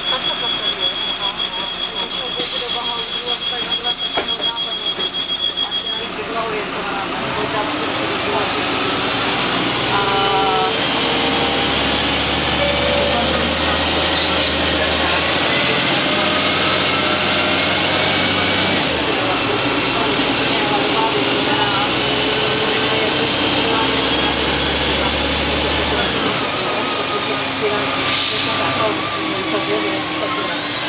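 Karosa B 961 articulated diesel bus: a steady high-pitched door warning tone sounds while it stands at the stop and cuts off about six seconds in as the doors close. The engine then pulls away, its whine rising in pitch, with gear changes about two-thirds of the way through and again near the end.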